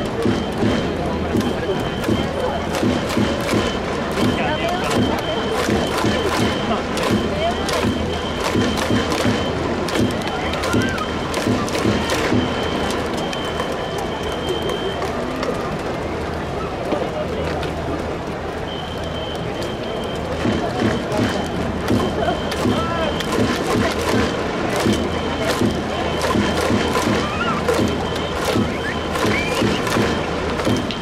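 Baseball stadium crowd: a steady hubbub of spectators' voices with many scattered claps and music in the background.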